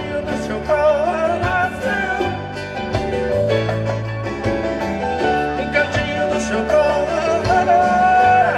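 Live sertanejo band music from electric guitars, bass guitar and keyboard, with a male lead voice singing over it.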